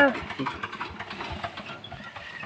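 VST Shakti power tiller's single-cylinder diesel engine idling steadily.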